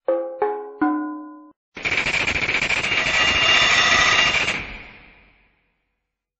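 Logo sting sound effect: three quick, ringing notes stepping down in pitch, then a loud, rapid mechanical rattling clatter that swells and fades out over about four seconds.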